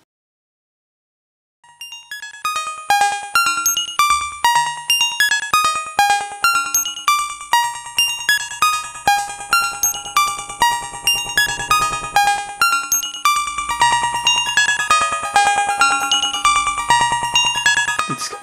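Synton Fenix II modular synthesizer playing a quick stream of short pitched notes through its bucket-brigade delay at its longest time without CV, the echoes overlapping into a dense cascade. It starts after about a second and a half of silence, and a high-pitched whistle from the BBD sits under the notes.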